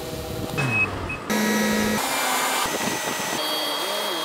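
Airport ramp noise from aircraft and ground equipment: a steady mechanical whir with high whining tones, changing abruptly several times.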